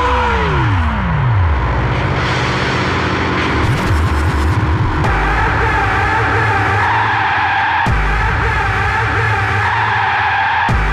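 Hardcore techno music. A held synth tone sweeps steeply down in pitch over the first second and a half and gives way to a dense, noisy stretch. About halfway through, a new, higher-pitched synth layer comes in and holds.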